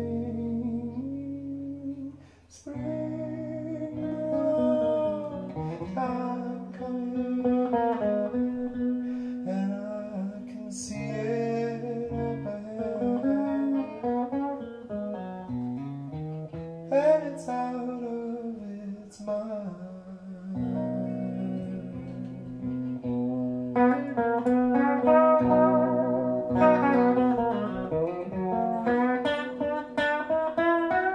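A man sings slow, wavering melodic lines over a plucked hollow-body archtop electric guitar. There is a brief pause about two and a half seconds in.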